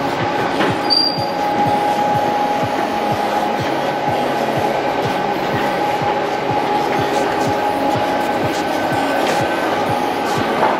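Steel roller shutter door rolling up, a steady mechanical rattle with a constant hum and a few ticks a second from the slats.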